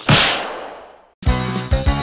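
Cartoon sound effect: a sudden sharp swish that fades away over about a second as a character is flung into the air. Bouncy keyboard music starts a little past the middle.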